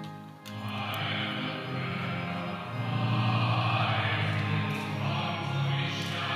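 Closing hymn in a church: voices singing over sustained organ notes, resuming after a brief break about half a second in.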